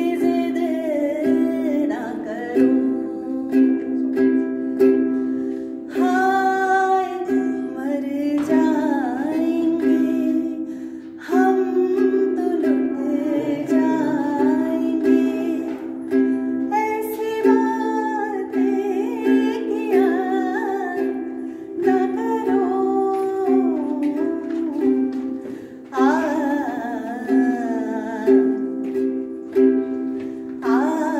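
A woman singing a slow, gliding melody while finger-picking a soprano mahogany ukulele, the sound carried by the reverberation of a rock cave.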